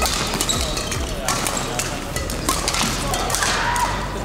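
Badminton rackets striking shuttlecocks, many sharp, irregular hits from several courts at once, with a couple of short squeaks from court shoes and voices in the background.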